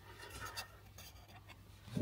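Faint scratchy rustling with a few light ticks: handling noise from a phone being held and swung around, over a quiet room.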